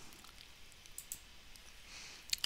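Faint computer mouse clicks, a few short ticks about a second in, over quiet room tone.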